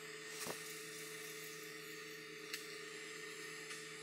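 Faint scratching of felt-tip markers drawing and hatching on a white board, with two light clicks, over a steady low hum.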